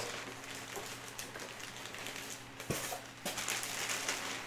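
Clear plastic bag rustling and crinkling softly as it is worked off a foam RC jet wing, with two light knocks in the second half.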